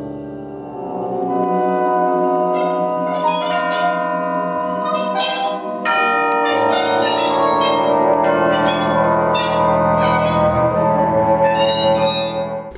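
Large jazz ensemble playing sustained, overlapping wind tones, with ringing struck notes coming in from about two and a half seconds in.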